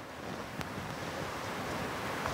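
A steady rushing noise like wind or distant surf, slowly growing louder, with a faint tick about half a second in.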